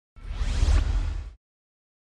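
A whoosh sound effect with a deep rumble underneath, swelling up and dying away over just over a second, then cutting off: a logo-reveal transition.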